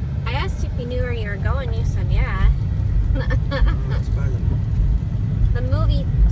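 Steady low rumble of a car driving at low speed, heard from inside the cabin, with people talking over it in short stretches.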